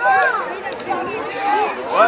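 Several voices talking and calling out over one another, loudest right at the start and again near the end: the chatter of players and spectators around a children's rugby match.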